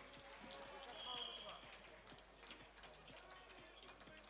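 Faint sports-hall ambience of distant voices, with scattered light thuds from wrestlers moving on the mat.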